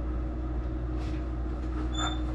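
A steady low machine hum with a constant mid-pitched tone running through it, and a few faint clicks.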